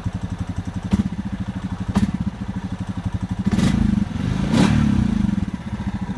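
A brand-new Honda Rancher 420 ATV's single-cylinder engine idling steadily, with two short blips of the throttle past the middle. Two sharp clicks come earlier, about one second apart.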